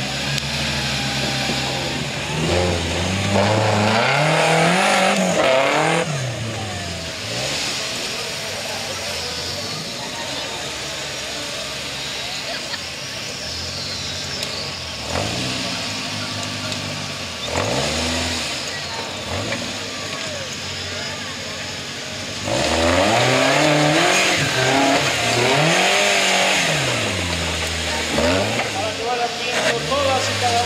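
Engine of a tube-frame 4x4 trial buggy revving hard in repeated bursts, each rising and falling in pitch, as it works over rock and log obstacles. There are three loud spells of revving, the last the longest in the second half, with lower steady running between them.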